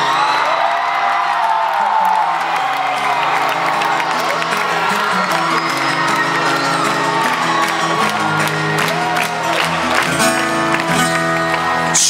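Amplified acoustic guitar playing a song's picked opening intro live through a PA, with the crowd cheering and whooping over it, most in the first couple of seconds.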